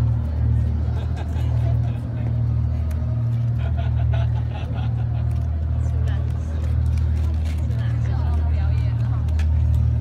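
A steady low rumble throughout, with people talking faintly over it.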